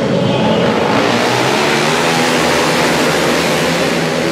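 A pack of 450 cc single-cylinder flat-track race motorcycles accelerating hard together, many engines revving at once, with the pitch climbing from about a second in.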